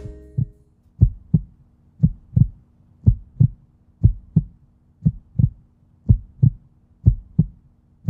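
Heartbeat sound effect: low double thumps in a lub-dub pattern, about one pair a second, as the music dies away at the start.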